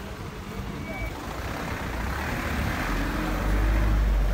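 A car on a wet, flooded road, its engine and tyre noise growing steadily louder toward the end as it comes closer.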